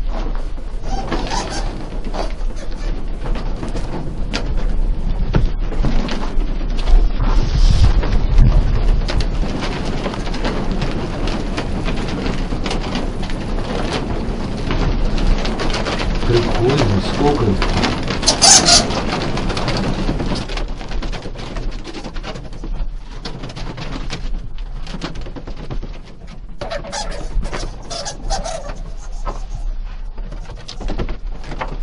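Bats squeaking, among loud rustling and handling noise from someone moving about, with a sharp noisy burst about two-thirds of the way through.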